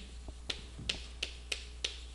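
Chalk tapping and clicking against a blackboard while writing, five short sharp clicks about a third of a second apart, over a low steady hum.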